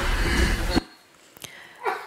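Wordless vocalizing of a person with profound intellectual and multiple disabilities (PIMD), a typical sound they produce, heard in a recording played over a hall's loudspeakers. It cuts off suddenly less than a second in.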